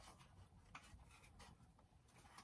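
Near silence, broken by a few faint, scattered clicks and scuffs of small plastic figures being handled and set down on a shelf.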